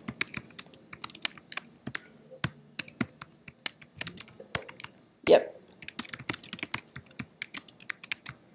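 Typing on a computer keyboard: a rapid, irregular run of keystrokes as a line of text is entered. A brief vocal sound breaks in a little past five seconds.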